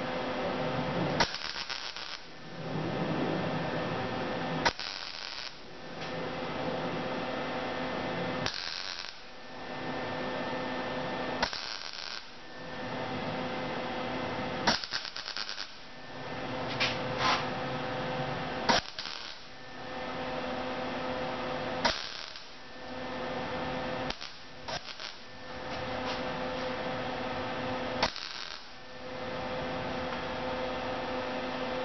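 MIG welder laying short stitch welds on a butt joint in thin quarter-panel sheet steel: about nine bursts of arc crackle, each two to three seconds long and starting with a sharp crack, with short pauses between and a steady hum underneath. The welds are kept short and moved around the seam so that the panel does not overheat and warp.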